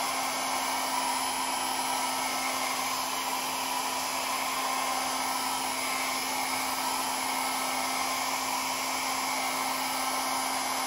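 Small handheld hair dryer running steadily on the whole, blowing air across wet alcohol ink. It makes a constant whir with a low hum under it.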